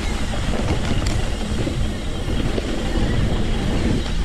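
Wind buffeting the camera microphone on a mountain bike descent, over the rumble of knobby tyres rolling on a dirt trail, with an occasional knock from the bike.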